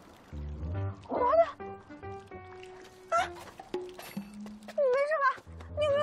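Light background score of held single notes. Several short, high, wavering sounds like small cries come over it, about one, three and five seconds in and again at the end.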